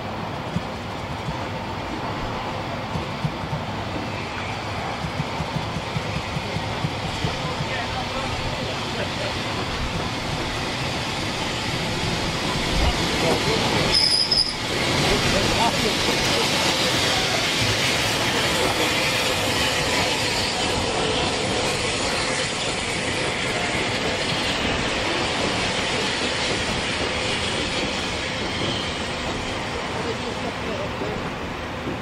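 Bulleid Battle of Britain class steam locomotive and its train of coaches running past, growing louder as the engine goes by about halfway through, with a brief high squeal at that point. The coaches then roll past steadily.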